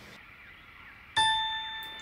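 Faint room tone, then about a second in a single bright bell-like ding that starts suddenly and rings out, fading over most of a second.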